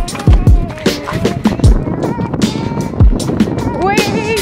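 Trap-style hip hop beat: deep 808 kick drums that drop in pitch on each hit, quick hi-hats and a sustained synth melody.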